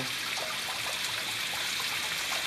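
Water running and trickling steadily into a garden fish pond, an even hiss with no breaks.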